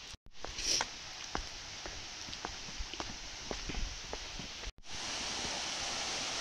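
Footsteps walking down concrete steps, a step about every half second. After a brief dropout near the end, a steady rushing noise takes over.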